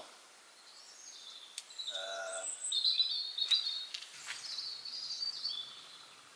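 Songbirds singing: a run of high chirps and warbled phrases, strongest around the middle, over a quiet outdoor background.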